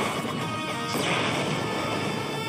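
Loud, dense opening theme music of a TV series' title sequence, with a crash about a second in.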